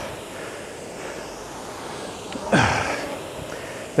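Concept2 rowing machine's air-resistance flywheel running with a steady whoosh during easy rowing, and about two and a half seconds in a short voiced exhale, falling in pitch, from the rower.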